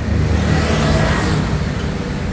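Street traffic close by: a motor vehicle passes, its engine and tyre noise swelling about half a second in and fading toward the end, over a steady low engine hum.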